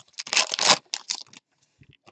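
A trading card pack wrapper being torn open by hand: a crinkly ripping in quick bursts that stops about a second and a half in.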